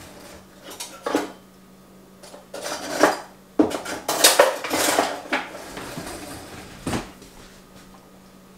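Metal cutlery and dishes clinking and clattering in irregular bursts, busiest and loudest just past the middle, with one last clink near the end, as utensils and serving ware are handled at a kitchen counter.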